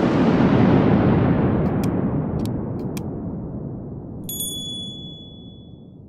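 Outro sound effects for a subscribe-button animation. A noisy whoosh starts loud and fades away slowly, three pairs of short mouse-clicks come between about one and a half and three seconds in, and a notification-bell ding sounds a little after four seconds and rings on as one clear tone.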